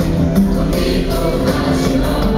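Live music with a choir of many voices singing over the accompaniment, loud and steady.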